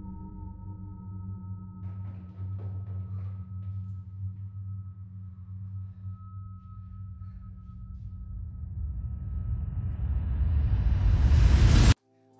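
Suspenseful background music: a steady low drone under a held high tone, swelling louder in the last few seconds into a rising rush that cuts off abruptly.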